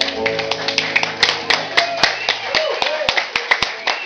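Small audience clapping: many scattered, uneven claps as a final electric guitar chord dies away under them. A man's voice starts talking over the applause about halfway through.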